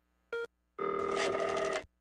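Telephone ring sound effect: a very short chirp, then a single trilling ring lasting about a second.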